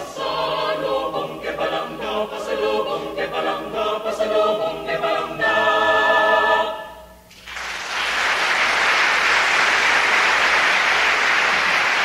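University a cappella choir singing the closing phrases of a Filipino folk song, ending on a held chord that dies away about seven seconds in. About a second later audience applause breaks out and keeps up steadily.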